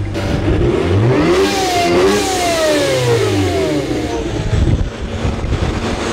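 Supercharged BMW E39 5 Series engine on a chassis dyno, revving up about a second in, then running down with a long falling whine as it slows. The owner says the supercharger has just failed and is making no boost.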